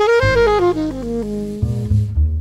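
Jazz saxophone playing a phrase that climbs for a moment, steps down note by note and settles on a held low note, over a walking low bass line.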